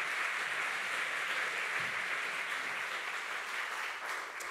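Audience applauding steadily.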